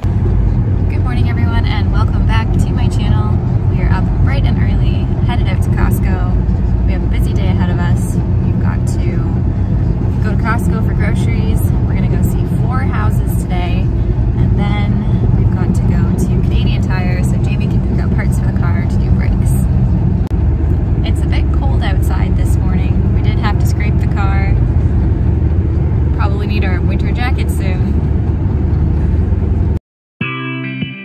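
Loud, steady low road and engine rumble inside a moving car's cabin, cutting off suddenly near the end.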